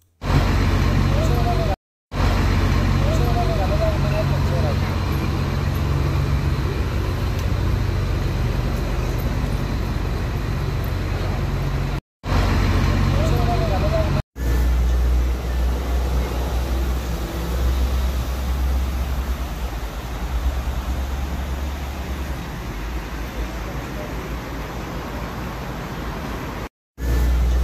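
Bus engines idling close by, a steady low rumble, with faint voices around them. The sound cuts out briefly three times, and after the third cut the rumble is deeper.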